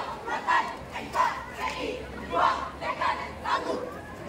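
A marching squad of students shouting in unison: short, loud chanted yells, about two to three a second, kept in time with the drill moves.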